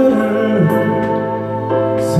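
Live male vocal singing a Korean song into a microphone, accompanied by electric guitar, with held chords sustaining underneath.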